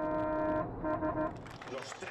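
Onboard sound from inside a Mercedes race truck's cab: a steady pitched drone that breaks up about two-thirds of a second in and fades out before the end.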